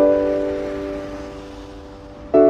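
Background piano music: a chord struck at the start and left to ring, slowly fading.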